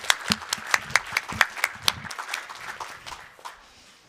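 Audience applauding, the clapping thinning out and fading away near the end.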